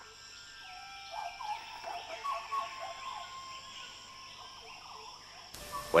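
Tropical nature ambience: a steady high-pitched insect trill running throughout, with short chirping and whistled calls coming and going over it.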